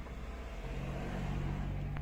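Car engine idling: a steady low hum heard from inside the cabin, growing a little stronger about a second in.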